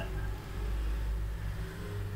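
A steady low hum with no speech: background noise on an online call's audio.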